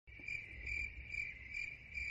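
Crickets chirping, a faint cricket sound effect: a steady high trill with chirps pulsing about two to three times a second over a low hum.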